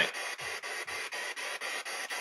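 Steady background hiss with a faint regular pulse about eight times a second.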